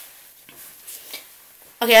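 Quiet room tone with a few faint, short rustles and taps from a person's movement, then a voice saying "Okay" near the end.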